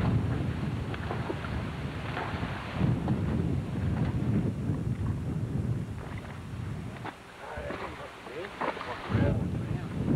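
Strong wind buffeting the microphone in gusts, a rough rumble that eases briefly about seven seconds in and surges again near nine seconds, with faint voices under it.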